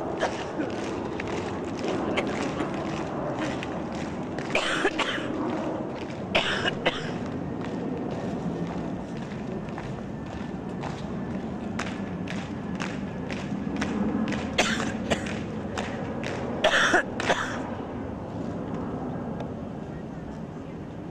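Boots of a column of marching guardsmen striking the tarmac in step, a regular tread about two steps a second, over a murmur of onlookers. A few louder, sharper sounds stand out around a quarter of the way in and again near the end.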